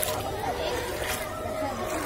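Several people's voices talking over one another, a mixed chatter of a small gathering.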